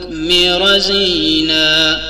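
A man's voice chanting an Arabic qaseeda, drawing out the end of a verse line in long held notes that step down slightly in pitch about halfway through.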